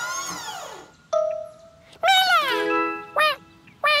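Cartoon soundtrack music and comic sound effects. A pitched tone sweeps up and falls away in the first second, a held tone follows, then several quick falling tones.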